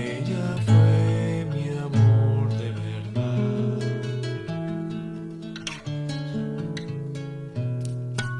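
Acoustic guitar playing a slow song: chords struck about every second or two and left to ring over a held bass note. A man's voice sings softly over it near the start.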